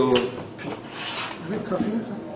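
A man's voice speaking in short phrases with pauses between them.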